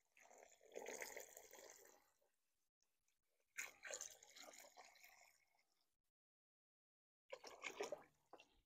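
Hot tap water poured from a plastic gallon jug onto white sugar in a five-gallon plastic bucket, mixing a 50/50 sugar syrup. It is heard faintly in three short spells of splashing, near the start, in the middle and near the end.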